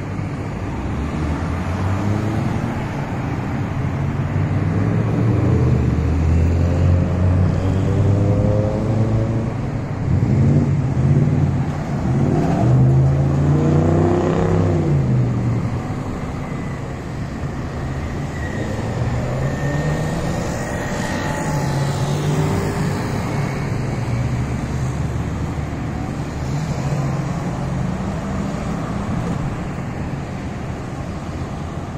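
Road traffic at an intersection: cars and SUVs driving and turning past, their engines rising and falling as each goes by. The loudest pass comes about halfway through, its engine pitch dropping as it moves away.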